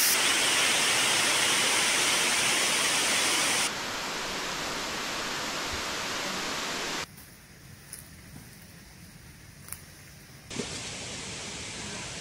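Small waterfall spilling down a rock face: a loud, steady rush of water. The sound cuts abruptly a few times, first to a quieter rush of a shallow stream, then to a much quieter stretch with a few small clicks about halfway through, then to a low steady rush again near the end.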